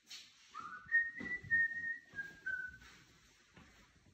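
A person whistling a few notes: a rising note that holds high for about a second, then steps down to a lower note and stops. Soft footsteps on a hard floor lie underneath.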